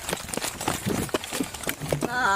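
Quick footsteps on pavement and knocking, rubbing gear noise from a body-worn camera jostled by a running officer.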